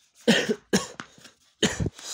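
A man coughing, a short fit of three or four loud coughs in quick succession.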